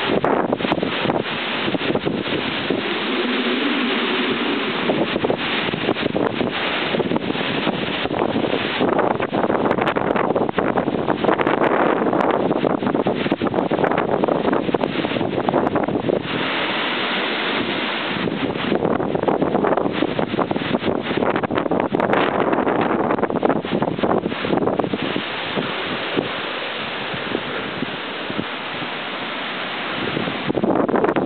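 Strong storm wind gusting through trees, buffeting the microphone in a loud, surging rush that swells and eases, a little calmer near the end.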